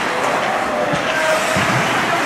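Ice hockey skates scraping and carving on rink ice during play, a steady hiss, with spectators talking.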